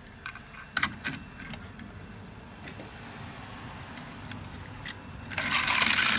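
Toy die-cast cars clicking as they are set down on a toy race-track ramp, then a clattering rattle of about a second near the end as they run down the track.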